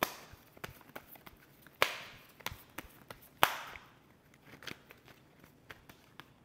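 Tarot cards being handled: three sharp card snaps, near the start, about two seconds in and about three and a half seconds in, with lighter ticks and rustles between.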